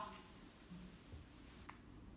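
High-pitched electronic tones from a smartphone's speaker, hopping and gliding slowly upward in pitch: the app's sound-wave Wi-Fi setup signal that sends the network settings to a SUPEREYE D1 security camera. The tones cut off suddenly near the end.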